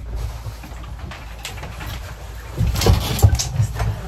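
Footsteps and small knocks of people moving about over a steady low hum, with a cluster of louder thumps about two and a half seconds in.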